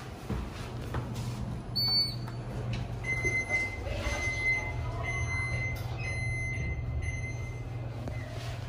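Hitachi passenger lift car: a short high beep about two seconds in, then a steady high buzzer tone for about four and a half seconds while the car doors slide shut, over a low steady hum.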